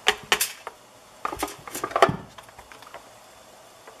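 Hard white plastic accordion-hose parts of a Sink Magic dishwashing gadget clicking and clattering as they are handled and knocked on a stone countertop: a couple of sharp clicks at the start, then a cluster of clatter between about one and two seconds in.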